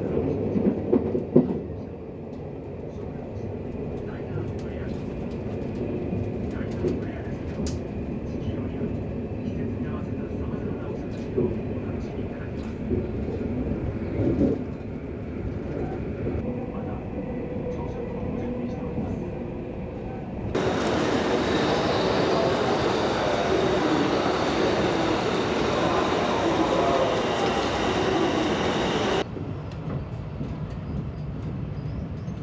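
Twilight Express sleeper train running on the rails, heard from inside the car: a steady low rumble with scattered clicks and knocks from the track. About two-thirds of the way in, a louder, hissier stretch of running noise starts suddenly and cuts off abruptly near the end.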